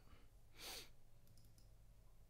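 A short sigh, a breathy exhale, about half a second in, followed by a few faint clicks against near silence.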